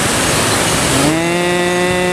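Water rushing down the log flume's chute and side waterfalls. About a second in, a long, steady, low pitched note joins it and holds.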